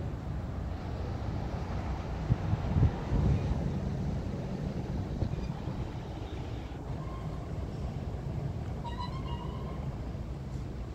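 Steady low rumble of outdoor city noise, with a few brief low thumps about two to three seconds in and a few faint, short high-pitched tones near the end.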